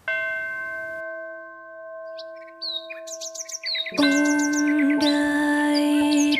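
A single bell-like chime struck once, ringing and slowly fading, then quick repeated birdsong chirps from about two seconds in, with soft music entering at about four seconds under the birds: a programme-break interlude.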